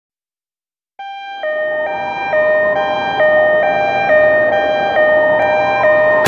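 Two-tone emergency-vehicle siren alternating high and low about every half second, starting about a second in and growing louder over the next second or so.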